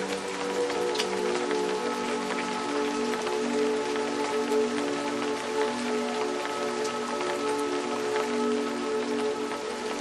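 Steady rain falling, with scattered individual drops ticking through it, over ambient music of long held notes.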